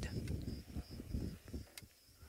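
Insects chirping faintly in short, repeated high-pitched pulses over a low, uneven rumble that fades toward the end.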